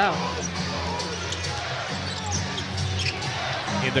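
Live NBA game sound on an arena court: a basketball dribbling on the hardwood under a crowd murmur, with a low steady hum of arena music.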